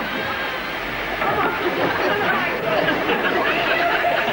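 Indistinct chatter: several voices talking over one another, none of it clear words.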